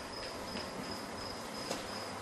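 A faint, steady high-pitched tone over a low even hiss in a quiet room, with a light tap near the end.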